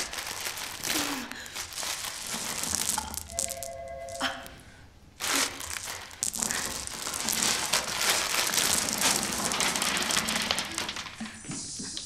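A crinkly plastic candy bag being rummaged and torn, then shaken so the small candy-coated chocolates spill out and scatter, giving a dense crackle of crinkling and clicking that is busiest in the second half.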